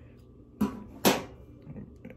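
Small blunt scissors snipping through the leathery shell of a ball python egg: two short cuts about half a second apart, the second the louder.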